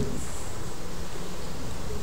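Steady low hum with hiss and a faint high whine: the background noise of the recording.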